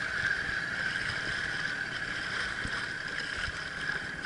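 Water lapping against a small skiff's hull on open water, with a steady high hum running throughout and scattered low knocks.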